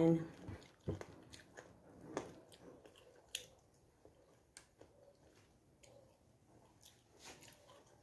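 Faint chewing with scattered short mouth clicks and smacks as someone eats rice.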